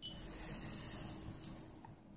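Handling noise of a wristwatch and its metal bracelet in the fingers: a sharp click at the start, then a fading high rustle, and a small tap about one and a half seconds in.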